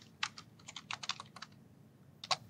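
Computer keyboard typing: about a dozen faint keystrokes in an uneven run as a couple of words are typed.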